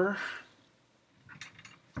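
Trading cards being handled: a few short, light scraping clicks as a stack of cards is slid and set down, ending in one sharper click.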